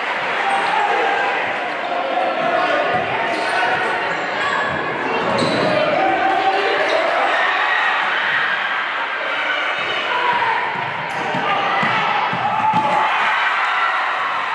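A basketball bouncing on a hardwood gym floor during live play, under a steady din of crowd and player voices echoing through a large gym.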